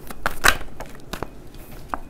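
Tarot cards being shuffled and drawn by hand: a few short, sharp card snaps and flicks, the strongest about half a second in.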